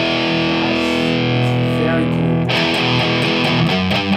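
Distorted electric guitar played through a tube amplifier into a Marshall cabinet, attenuated by a Two Notes Torpedo Captor: a chord rings on, then new chords are played about two and a half seconds in.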